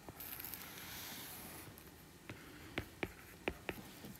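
Stylus writing on a tablet: a faint scratchy stroke about a second and a half long, then about five light taps of the tip as more is written.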